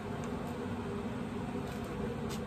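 Pit Boss Austin XL pellet smoker firing up on its smoke setting, its combustion fan running with a steady hum and hiss.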